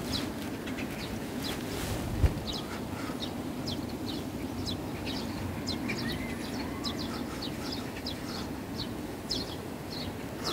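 Small birds chirping, short high calls repeating irregularly a couple of times a second, over a steady low wind rumble; a single low thump about two seconds in.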